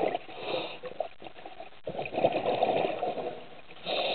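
Underwater sound of a scuba diver breathing through a regulator: noisy bursts of bubbling and hissing, each about a second long, coming and going every couple of seconds.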